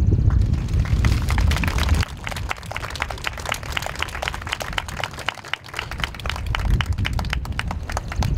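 Small outdoor crowd applauding: a steady patter of scattered individual claps. Wind buffets the microphone for the first two seconds.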